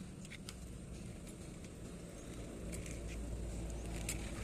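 Quiet outdoor background: a low steady rumble with a few faint, light clicks scattered through it.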